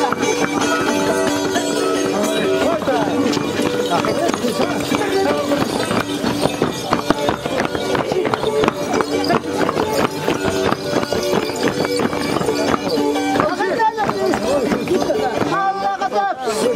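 Charango strummed in a steady rhythm, with voices singing along in long held notes.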